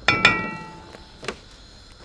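A sharp knock on metal kitchenware right at the start, ringing briefly with a bright metallic tone that fades within about half a second, then a small click a second later.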